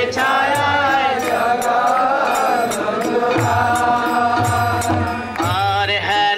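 A man singing a Bengali devotional kirtan, drawing out one long wavering note for most of the time before starting a new phrase near the end, over a steady beat of hand cymbals and drum.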